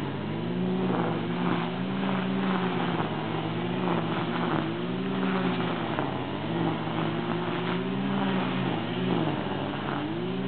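Electric motors of power wheelchairs whining, the pitch rising and falling again every couple of seconds as the chairs speed up and slow while turning.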